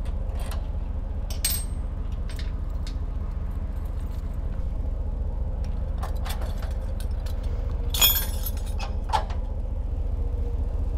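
Steel safety chains clinking and rattling as they are handled at a trailer's hitch coupler, with scattered light clicks, a sharper metallic clink about eight seconds in and a smaller one just after nine. A steady low engine rumble from the idling pickup runs underneath.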